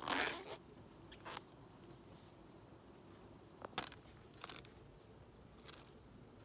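Ears of corn being snapped off their stalks by hand, with the husks and leaves crackling. A loud crunching tear comes at the start, followed by several shorter sharp snaps.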